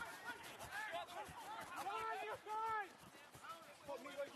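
Faint, distant shouted calls from rugby players on the pitch: several short yells, the loudest about two seconds in, with open-field ambience.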